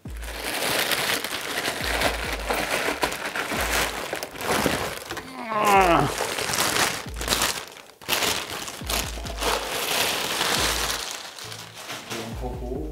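Plastic packaging crinkling and crackling as a studio light is unwrapped from its bag, over background music with a low beat. About halfway through, a short pitched sweep falls from high to low.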